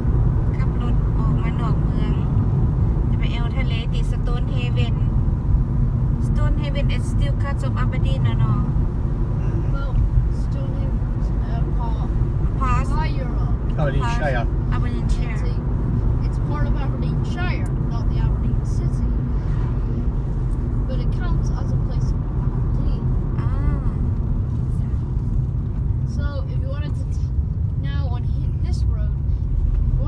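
Steady low rumble of a car's engine and tyres heard from inside the cabin while driving, with talking over it.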